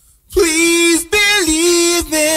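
A voice singing two long held notes without accompaniment, the second dipping in pitch partway through.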